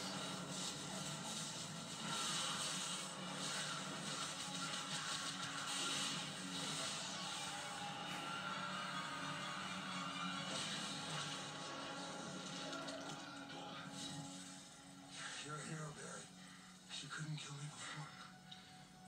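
Television soundtrack of a superhero fight scene played through a TV speaker. Ominous score runs under sudden hit and whoosh effects, with a shout about ten seconds in. It grows quieter in the last few seconds, where a line of dialogue begins.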